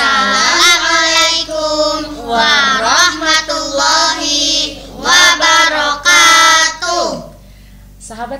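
A group of children and women singing together, the children's voices leading, with long held and sliding notes; the singing stops about seven seconds in.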